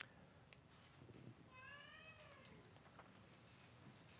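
Near silence, broken about one and a half seconds in by a single faint animal call about a second long that rises and then falls in pitch.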